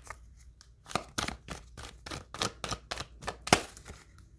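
A deck of oracle cards being shuffled by hand: a run of irregular soft clicks and slaps, the loudest shortly before the end.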